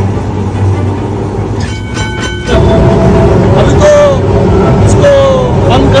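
Background music, then about two and a half seconds in a sudden switch to a Kolkata tram running on its rails, heard loud from on board.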